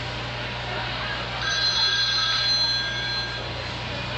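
A telephone ringing: one electronic ring lasting about two seconds, starting a little over a second in, over a steady low hum.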